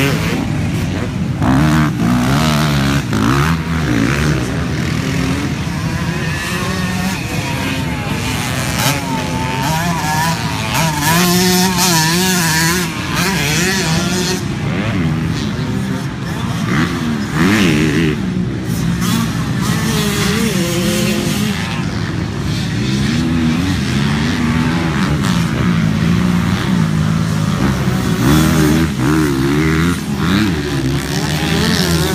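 Several motocross dirt bikes, with a quad among them, running on a dirt track. Their engines rev up and down over one another, the pitch climbing and dropping again and again as riders work the throttle and shift through the jumps and turns.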